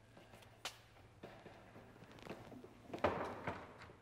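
Quiet rustling with a few light clicks and knocks as things are handled at a kitchen cabinet. About three seconds in, a man breathes a loud, breathy "Oh".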